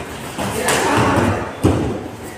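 A loud burst of noise lasting about a second, then a sharp thump about one and a half seconds in.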